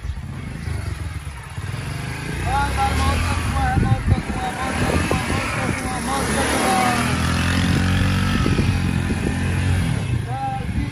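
A small commuter motorcycle's engine running as it is ridden around a yard with a passenger, getting louder from about three seconds in. Voices call out over it.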